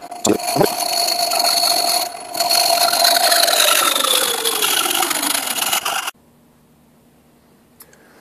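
A hand hacksaw cutting through aluminium tube held in a vise, a steady rasping with a ringing tone that slides down in pitch as the cut goes on. It cuts off suddenly about six seconds in, leaving quiet room tone with a faint low hum.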